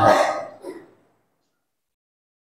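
The end of a man's shouted word, its echo dying away within a second, then dead silence.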